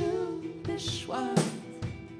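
A band playing live: acoustic guitar and drum kit, with a sung vocal line that bends in pitch and a cymbal crash about a second and a half in.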